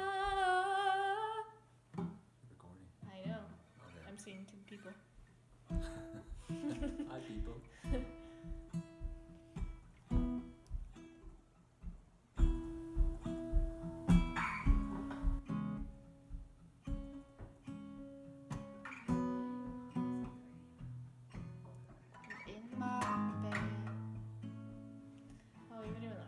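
A held, wavering hummed note dies away in the first second or two. Then an acoustic guitar plays alone, picked notes and chords ringing out.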